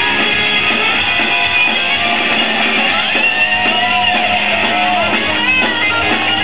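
A live rock band playing loud, led by electric guitars.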